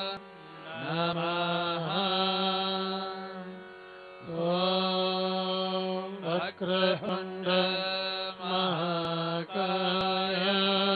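A voice chanting a Hindu devotional mantra in long held, gliding phrases over a steady drone, with short breaks about half a second and four seconds in.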